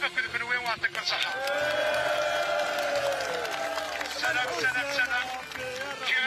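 A man's voice shouting through a handheld megaphone to a crowd, with one long drawn-out call from about a second in until past halfway.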